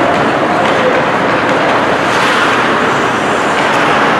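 Ice rink ambience during hockey play: a loud, steady noise with no distinct impacts, from skates on the ice and the arena around them.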